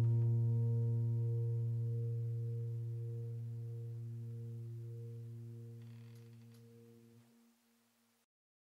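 Background piano music: a single low, sustained chord rings on and slowly fades away, dying out near the end.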